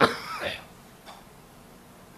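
A man coughs into a handkerchief held over his mouth and nose: one sudden burst at the very start, lasting about half a second, with a faint second catch about a second in.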